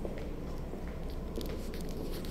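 Steady low hum inside a ferry, with scattered clicks and rustles from a handheld phone being swung around.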